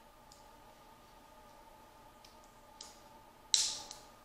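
Small clicks of a helmet chin strap and its fastener being adjusted and done up at the chin, over a faint steady hum. A single louder, brief snap of the strap hardware comes about three and a half seconds in.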